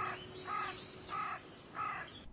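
Crow cawing four times, evenly spaced about half a second apart.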